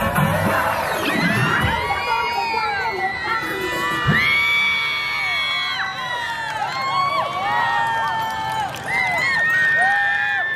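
A crowd of young children cheering and screaming, many high voices overlapping, as the dance music ends in the first second or so.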